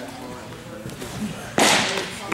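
A pitched baseball popping into a catcher's mitt: one sharp, loud crack about a second and a half in, echoing briefly in the indoor training hall.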